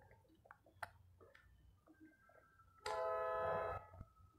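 A horn sounds once, a loud steady blast about a second long, starting and stopping abruptly about three seconds in. Before it come faint small clicks of eating by hand.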